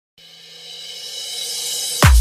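Electronic DJ dance-mix intro: after a brief silence, a hissing build-up sweep with held high tones swells steadily louder.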